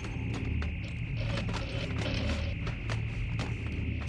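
Electronic sci-fi ambience from a cartoon soundtrack: a steady high whine over a low pulsing hum, with scattered clicks and chirps.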